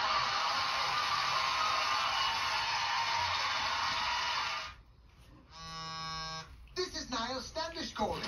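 Studio audience applauding and cheering at the end of a stand-up set, with music under it, played through a television; it cuts off about two-thirds of the way in. After a short gap comes a steady buzzing tone about a second long, then a commercial's voice begins near the end.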